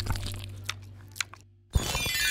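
A person crunching and chewing a crunchy snack: a few crisp crunches over background music that fades away. The sound drops out briefly, and a transition sound effect starts near the end.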